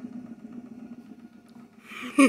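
Whole-body vibration plate running with a steady low hum, which fades out about three-quarters of the way through.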